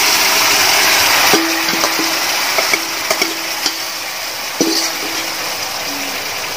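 Chilli-spice masala sizzling in hot oil in a metal pan, a steady hiss, with about five short metallic clinks against the pan that ring briefly.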